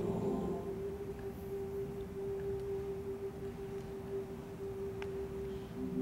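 Choir holding a single sustained note, a steady drone; the fuller chord of other voices fades out about half a second in, leaving the one held pitch.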